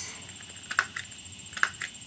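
A small handheld tool clicking sharply four times, in two quick pairs, as it closes a cut in a mock surgical patient.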